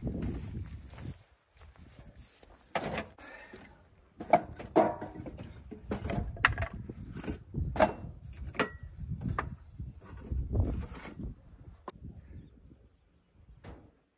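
Split firewood logs being unloaded from a hand cart and stacked onto a metal table's shelf: a string of irregular wooden knocks and clunks from about three seconds in until near the end, some with a short ring. At the start, a low rumble of the cart rolling over concrete.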